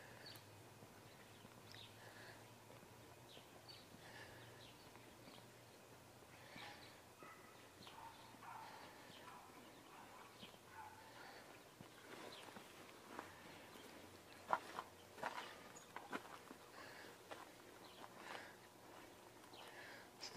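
Near silence: faint outdoor ambience with scattered soft, short high chirps and clicks, and a few sharper clicks about three-quarters of the way through.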